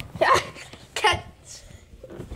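A child's voice: two short breathy sounds, like brief laughs or hiccups, about a second apart, each falling in pitch.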